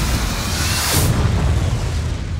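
Cinematic explosion sound effect with a deep rumble, a bright hissing blast about half a second in that cuts off sharply at around one second, with music underneath.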